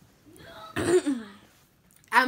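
A woman clearing her throat once, a rough start ending in a short voiced sound that falls in pitch.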